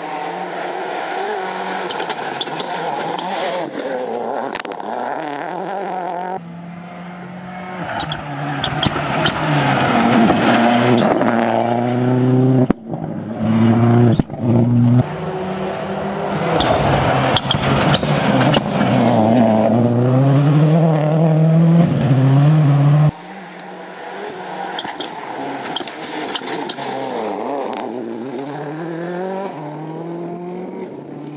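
Ford Focus WRC rally car's turbocharged four-cylinder engine revving hard on a rally stage, its pitch climbing and dropping again and again through gear changes, braking and acceleration. Several separate passes are joined by abrupt cuts, at about 6, 13, 15 and 23 seconds.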